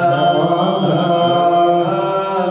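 Ethiopian Orthodox liturgical chant by male voices, slow and drawn out, with long held notes that bend gently in pitch.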